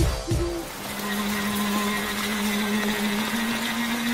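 A brief sting at the start, then a steady low drone with fainter higher tones held over it, like an eerie background music bed.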